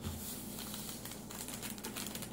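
A small plastic packet crinkling as it is handled and emptied, a dense run of faint little clicks and crackles.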